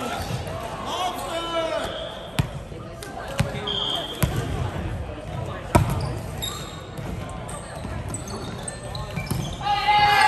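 Volleyball rally in a gym: a handful of sharp smacks of hands and arms striking the ball, the loudest about six seconds in, among players' calls.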